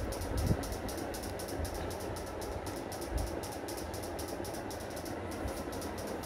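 Steady mechanical hum with a fast, even flutter in the high end, with a few soft low bumps and rustles as silk fabric is handled.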